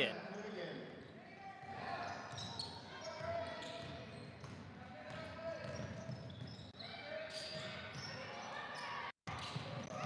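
A basketball bouncing on a hardwood court during play, with scattered voices of players and spectators echoing in a large gymnasium. The sound cuts out completely for a moment near the end.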